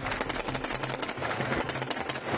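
Rapid automatic gunfire, a dense run of sharp reports, heard over a news music bed with a pulsing bass.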